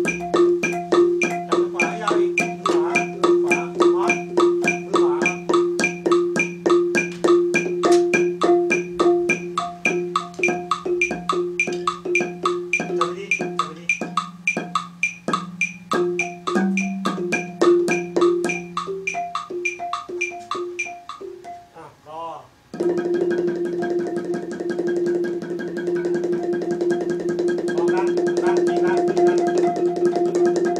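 Thai ranat ek (wooden-bar xylophone with a boat-shaped resonator) struck with padded mallets in an even run of ringing notes, about four to five a second. The playing thins out and briefly drops away about three-quarters of the way through, then returns as a fast, dense tremolo of rapid strikes.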